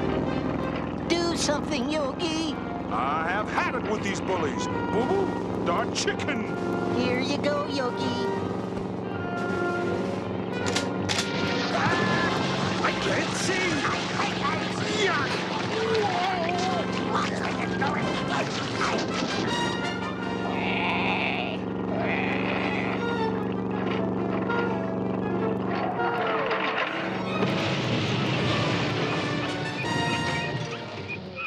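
Cartoon action-scene soundtrack: sustained orchestral music under a run of comic sound effects, with sharp hits and crashes and characters' wordless cries and yells.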